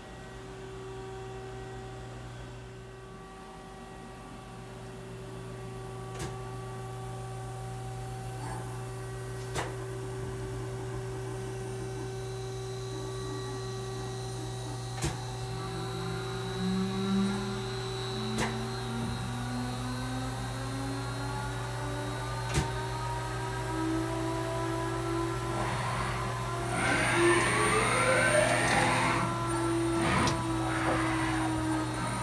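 Ganesh Cyclone 32-NCY CNC Swiss-type lathe running, with a steady electric hum. From about halfway, its motors whine up gradually in pitch, and near the end there are steep rising sweeps and the sound grows louder. Several sharp clicks are scattered through.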